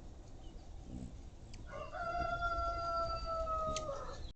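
A rooster crowing once: one long call held for about two seconds, sinking slightly in pitch, starting about two seconds in and cut off at the end.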